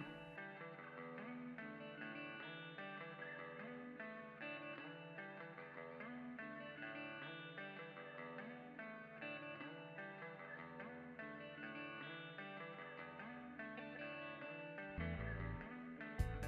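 Quiet instrumental background music led by plucked guitar, with lower bass notes coming in near the end.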